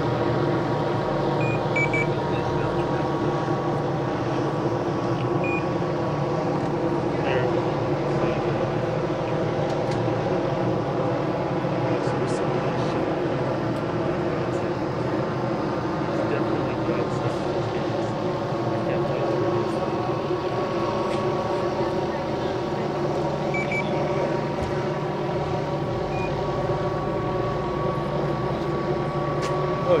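Steady hum of idling vehicle engines, several pitches layered together and unchanging throughout, with a few faint clicks.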